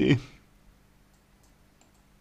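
A man's voice finishing a word, then a pause holding only a faint steady hum and a few faint clicks.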